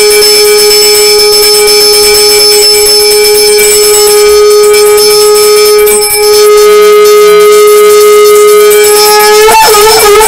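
Conch shell (shankha) blown in one long, loud, steady note during a Hindu puja, with a short dip about six seconds in; near the end the note wavers and breaks before it stops.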